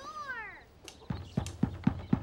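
Someone shut inside a latched wooden box pounding on it from within: a run of dull thumps, about four a second, after a short high cry that falls in pitch.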